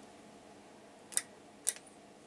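Quiet room tone with two short, faint clicks about half a second apart.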